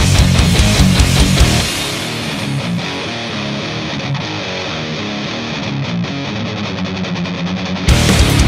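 Loud rock music with guitar, heavy-metal in style; it drops to a lower level about a second and a half in and comes back loud near the end.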